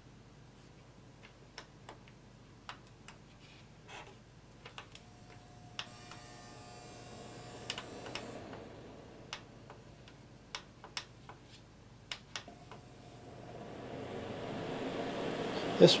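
Repeated clicks of the push buttons on a Holmes electric fan heater's LED control panel, pressed again and again before the heater responds. Its fan whirs up for a couple of seconds about six seconds in, stops, then starts again and grows louder near the end.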